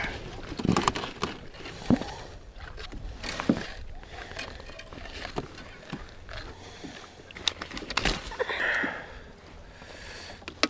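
Irregular clicks and knocks of a thornback ray being handled and unhooked on a plastic fishing kayak, the hook, line and gear tapping against the hull.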